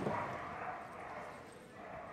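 Steady, low background noise of a large indoor arena, with no distinct event standing out.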